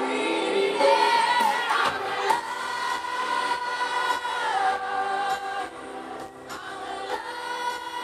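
Female pop vocalist singing live over backing music, holding long sustained notes that step from one pitch to the next.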